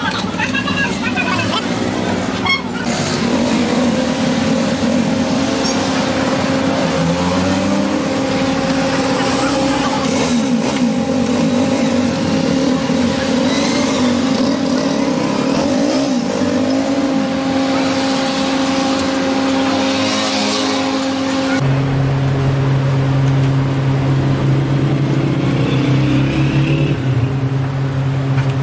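A motor vehicle's engine running steadily, with indistinct voices. The hum drops to a lower, stronger pitch abruptly about 22 seconds in.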